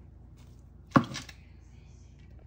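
A single sharp knock of a hard object, with a lighter knock just after.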